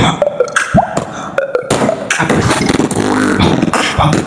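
Beatboxing into cupped hands: sharp vocal drum hits, a short rising pop about a second in, then a longer, rapidly pulsing sound through the second half.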